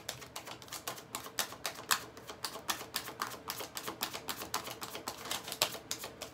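A deck of round tarot cards being shuffled by hand: rapid, uneven clicking and flicking of the cards, several clicks a second, easing off near the end.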